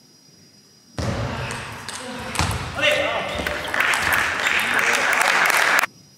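Table tennis rally in a large hall: the celluloid ball knocking on the bats, table and floor, with voices in the hall. The sound starts abruptly about a second in and cuts off suddenly just before the end.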